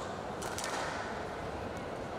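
Squash ball being struck in a rally: sharp cracks of racket and wall, a cluster about half a second in and another near the end, over the steady noise of an indoor hall.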